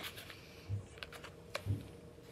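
A few faint clicks and taps as a small cardboard box is handled and turned over in the hands, with two soft low bumps.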